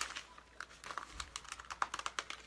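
A quick, irregular run of small sharp clicks and crinkles from close-by handling.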